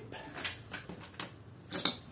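Old bicycle chain rattling and clinking against the metal window frame as it is handled: a few light clicks, then a louder jangle of links near the end.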